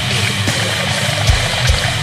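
Extreme metal music: dense, heavily distorted guitars over drums, with low kick-drum hits and a wash of cymbals.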